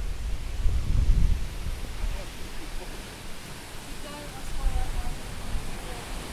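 Steady rushing of a small two-step waterfall, formerly a canal lock, with low uneven rumbling on the microphone, heaviest in the first second and a half and again near the end.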